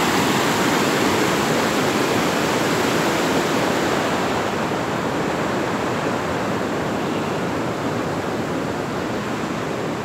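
Flooded creek rushing across a road in a steady, loud wash of turbulent water, easing slightly about halfway through.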